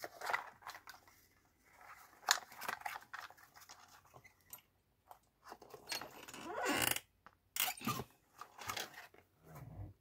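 Card and paper rustling, with a few sharp clicks and knocks from a metal Crop-A-Dile eyelet-setting punch being positioned and squeezed to set an eyelet through a journal cover.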